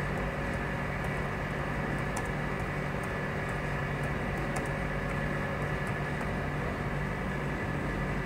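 Steady electrical or fan hum, with a few faint, scattered clicks of keys being typed on a computer keyboard.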